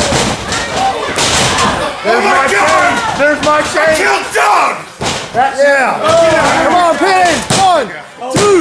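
Wrestling crowd and wrestlers yelling and shouting in overlapping calls in a small hall. A hard slam sounds right at the start, as an object breaks over a wrestler on the ring mat.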